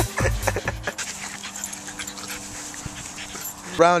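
Background music fades out about a second in. After it, two dogs play-fight in the grass with faint panting and rustling.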